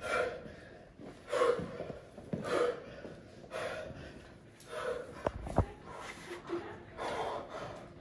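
A person breathing heavily in short gasping breaths, roughly one a second. Two sharp thumps come a little past the middle and are the loudest sounds.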